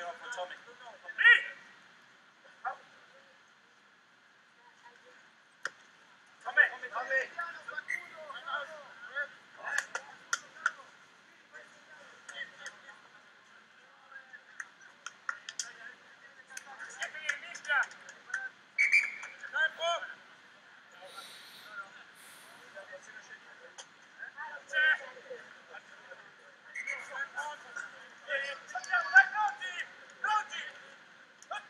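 Shouts and calls from rugby players on the pitch, coming in several separate bursts with quieter gaps between. The words cannot be made out.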